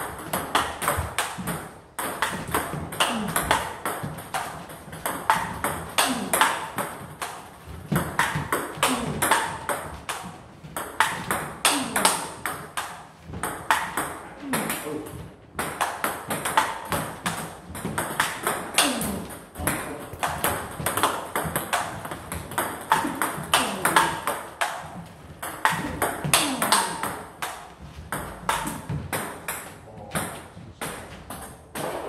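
Table tennis rally: a quick run of sharp clicks as the celluloid-type ball is struck by the rubber-covered paddles and bounces on the table, several a second, with a chopper returning an attacker's balls with backspin.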